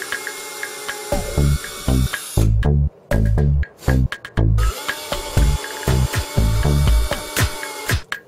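A power drill runs in two stretches of a few seconds each, boring holes through a thin plastic project-box panel. It plays over electronic background music with a steady drum-machine beat.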